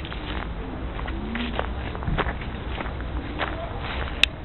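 Footsteps of a person walking, irregular steps about every half second, over a steady low rumble.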